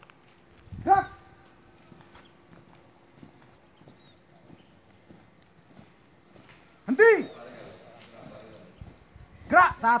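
Shouted drill commands: one long drawn-out call about a second in, another about seven seconds in, and a quick count of 'one, two' near the end. Between them comes the faint, uneven tramp of a squad's boots marching on grass.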